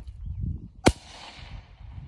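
A single shot from an over-under shotgun with an Atec A12 suppressor, firing an S&B subsonic shell upward, about a second in. It is a short, sharp report followed by a rolling echo that fades over about a second. The suppressor and the subsonic load take away most of the muzzle crack.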